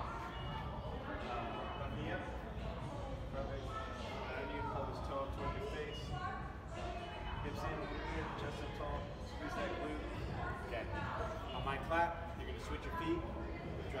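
Indistinct talking throughout, over a steady low hum, with a few light taps.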